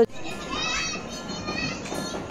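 Children's voices and chatter at some distance, over a steady noisy outdoor background.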